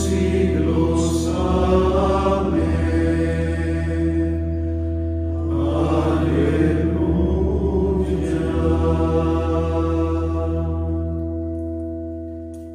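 A group of men's voices sing a chanted hymn of the Divine Office together over sustained, held chords from an accompanying instrument. The chords change a couple of times. The singing dies away near the end.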